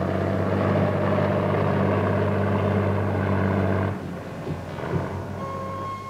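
Heavy earthmoving machinery's engine running with a steady low drone as a crane grab loads a dump truck; the drone drops away about four seconds in. A steady high electronic tone starts near the end.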